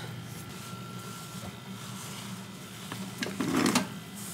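Microfibre towel being wiped across the floor, with a brief, louder rubbing swell near the end, over a steady low hum.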